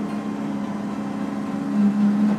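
Tractor engine running at a steady pitch under load, heard as a low drone inside the cab while it pulls a tillage implement through snow.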